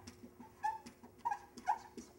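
Dry-erase marker squeaking and ticking against a whiteboard as a word is written, with a few short, high squeaks.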